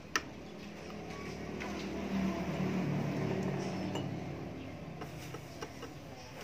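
Oxy-acetylene torch brazing a steel pipe with a filler rod, with a sharp metallic clink just after the start. A low hum swells through the middle seconds and fades, and a few small clicks come near the end.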